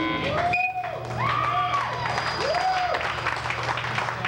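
A rock band's song ends on a held electric guitar chord that stops at the start, and club audience applause follows, with a few short tones over it that rise and fall in pitch.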